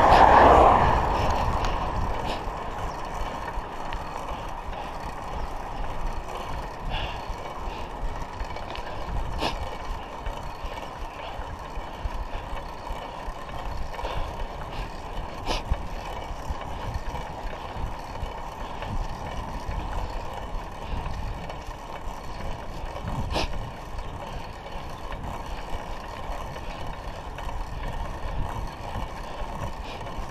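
Steady wind and tyre rush of a bicycle ridden on a paved road, picked up by a handlebar-mounted action camera. A car passes loudly at the very start, and a few sharp clicks from the bike come later.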